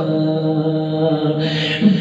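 A man singing a Saraiki devotional kalam, holding one long steady note that lifts in pitch near the end.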